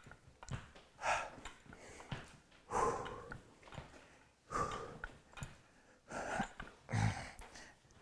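A man breathing out hard through the nose and mouth during a seated jacks and dumbbell curl set, one short forceful exhale about every second and a half to two seconds, in time with the reps.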